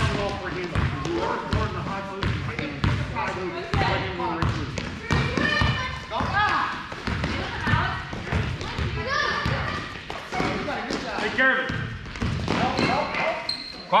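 A basketball being dribbled on a hardwood gym floor, repeated bounces in a large hall, mixed with indistinct shouting voices.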